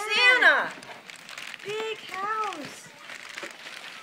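Excited voices calling out wordless exclamations, a loud high one at the start and more around two seconds in, with wrapping paper crinkling faintly beneath.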